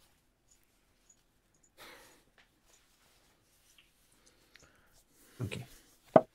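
Quiet room tone broken by a short breathy exhale about two seconds in and a few faint clicks, then a man says "ok" near the end.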